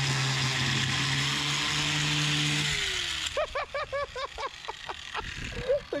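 Corded electric angle grinder running with a cut-off wheel against a metal bar, a steady motor tone with a harsh grinding hiss; about two and a half seconds in it is switched off and its pitch falls as it spins down. Laughter follows.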